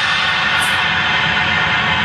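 Drum-kit cymbals ringing on in a steady, hissing wash, with no new strikes.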